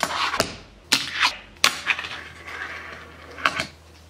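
Fingerboard trick on a tabletop ledge: a series of sharp clacks as the small board pops, flips and lands, with a faint scraping grind along the ledge in the middle and two more clacks near the end.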